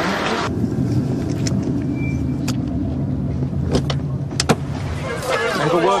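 Car engine running, heard from inside the cabin as a steady low hum, with several sharp clicks over it. Voices break in near the end.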